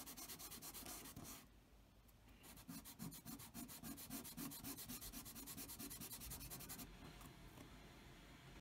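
Small plastic model part rubbed by hand on wet wet/dry sandpaper, faint quick back-and-forth strokes, several a second: the black paint is being wet-sanded off the raised grill detail. The strokes pause briefly after about a second and a half, resume, and stop near the end.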